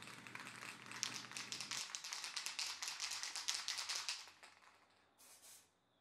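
Aerosol spray-paint can being shaken, the mixing ball inside rattling in quick, even clicks for about four seconds, then a short hiss of spray near the end.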